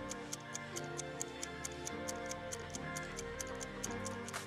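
Countdown timer ticking, a clock-like sound effect at about four ticks a second, over soft background music.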